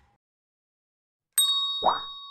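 A bright bell-like ding sound effect comes about a second and a half in and keeps ringing. It marks the notification bell being clicked in an animated subscribe button. A short second sound joins it just before the end.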